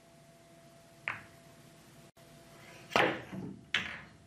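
Billiard balls and cue on a pool table during a shot: a light click about a second in, then a louder knock near three seconds and a sharp click just before the end.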